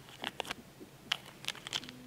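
Thin plastic Coca-Cola wrapper crinkling as it is handled in the fingers: a string of short, irregular crackles.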